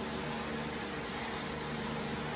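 Steady machine hum with hiss and a few faint held tones, like a fan running.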